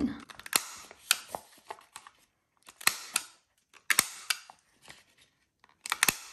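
Handheld corner-rounder punch clipping the corners of paper envelopes: a run of sharp clicks, often in pairs about a third of a second apart, with paper rustling between as each envelope is turned to the next corner.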